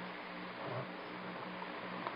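Steady hiss and a low, faintly pulsing hum from an old tape recording, with no distinct sound over it.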